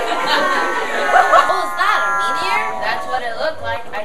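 Many children's voices shouting and chattering at once. Under them runs a held, music-like tone of several pitches that slowly dips and fades about three seconds in.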